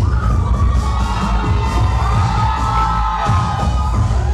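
Loud dance music with a heavy bass beat, with the audience cheering and shouting over it.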